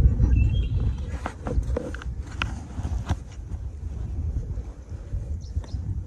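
Wind buffeting the microphone in a steady low rumble, with a few light taps and clicks from handling in the first half.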